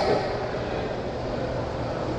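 Steady background hiss with a low hum beneath it, even in level, with no speech.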